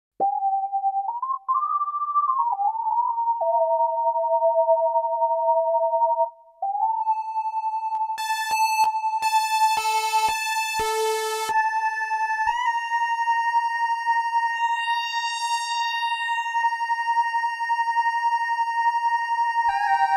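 Modal Cobalt8X virtual-analogue synthesizer playing a lead sound: a few held notes with pitch glides between them, then a long held note whose tone brightens as overtones are brought in by the knobs. A run of sharp clicks comes about eight to eleven seconds in, and sweeping high overtones follow.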